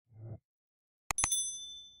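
Subscribe-button animation sound effects: a short low sound near the start, then two quick mouse clicks about a second in, followed by a bright notification-bell ding that rings and fades.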